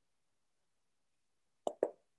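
Near silence, broken near the end by two quick soft pops about a fifth of a second apart.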